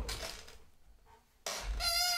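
A soft rustle of movement, then, about one and a half seconds in, an office chair starts to creak with a sudden high-pitched squeak as it swivels under a seated person.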